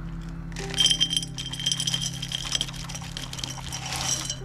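Gravelly bonsai soil poured from a plastic cup into a terracotta pot, the grains rattling and clinking against the clay. It starts about half a second in and is heaviest at first.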